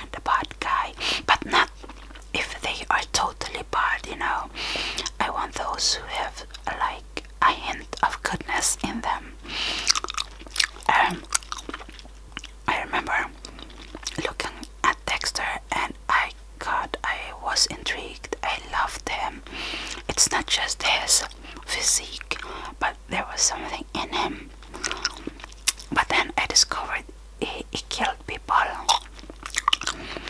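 Close-miked gum chewing: many quick, wet mouth clicks and smacks, mixed with soft whispered talk.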